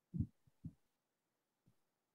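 A few short, muffled low thumps on a participant's microphone, heard over a video call with dead silence between them: a loud one near the start, two quick softer ones just after, and a faint one near the end.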